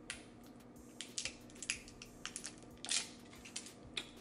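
Irregular small clicks and crackles of fingers and long nails working at a small glass bottle and its plastic cap, with a longer scratchy scrape about three seconds in.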